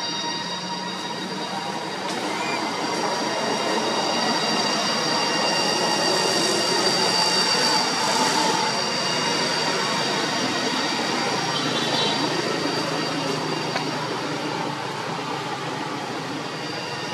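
A steady, loud outdoor drone: an even hiss with several high, unbroken ringing tones held above it, swelling a little in the middle and with no distinct calls.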